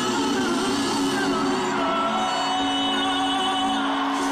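Live concert recording of a female pop singer singing melismatic vocal runs over a sustained instrumental backing.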